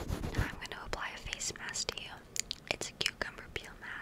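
Close, soft whispering into a microphone, broken by several sharp clicks. Rhythmic rubbing at the start stops about half a second in.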